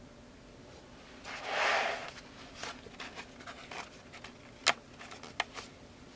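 Thick, cardstock-weight pages of an art journal being turned by hand: a paper swish about a second and a half in, then light rustles and taps as the page is handled, with a sharp click near the five-second mark.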